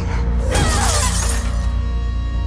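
Glass shattering about half a second in, a dense crash of breaking glass that lasts about a second, over a low, steady music drone.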